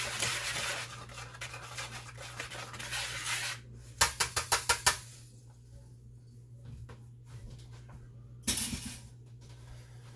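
Kitchen utensil scraping through a bowl of dry seasoned flour, then about six quick taps against the bowl about four seconds in, and a short scrape near the end.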